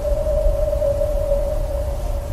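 A single high tone held steady over a low rumble: a sustained, eerie drone in the film soundtrack.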